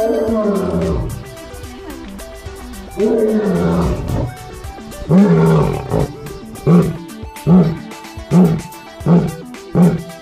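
Lion roaring: three long, loud moans that fall in pitch, then a run of short grunts, a little under one a second, in the roaring bout's closing phase. Faint background music runs underneath.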